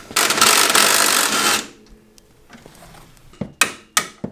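Impact wrench running once for about a second and a half, zipping a bolt off, followed by a few sharp metallic clinks.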